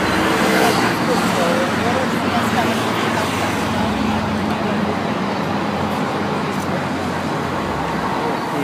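Steady city street traffic noise with people talking nearby.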